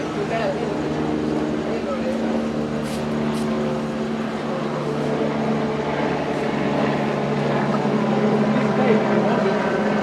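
A vehicle engine idling with a steady, even hum, and indistinct voices talking over it.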